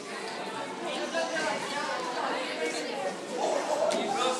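Indistinct background chatter of several voices talking at once, with no clear words, and a sharp click near the end.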